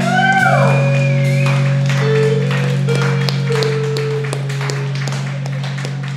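Live band playing loud amplified electric guitar and bass, holding a sustained low droning note. High gliding guitar tones rise and fall in the first second or so, followed by short held notes and scattered drum and cymbal hits.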